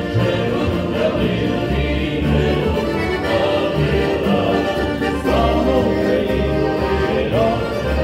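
A small busker band playing live: a double bass plucking deep, repeated notes under an accordion and a gliding melody line.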